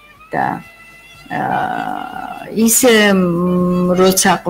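A person's voice in conversation: a short syllable, then talk ending in a long drawn-out vowel held on one steady pitch.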